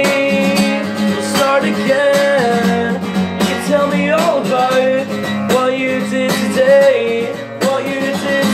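Acoustic guitar strummed, with a man's voice singing over it.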